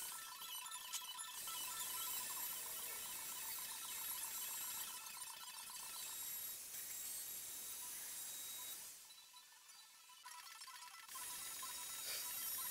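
Handheld electric router running steadily, heard faintly, as it cuts a 45-degree chamfer along the edge of a wooden table. The sound drops away briefly about nine seconds in, then returns.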